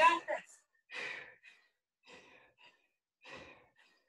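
A woman breathing hard in short, forceful exhalations, three of them about a second apart, in rhythm with the twists of a weighted Russian twist.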